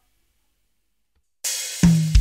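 Silence, then about a second and a half in a software drum kit sounds, played from a MIDI controller's pads: a cymbal, then a sharp low drum hit just before the end.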